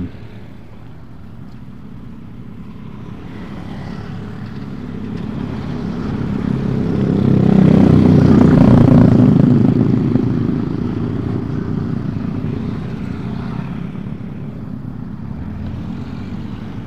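Motorcycle engine drone with road and wind noise, growing louder to a peak about halfway through, then easing off.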